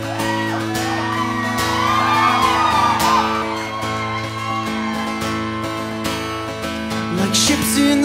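Live recording of a Celtic rock band playing the instrumental intro of a song: guitar over a steady low drone, with a wavering higher melody line above.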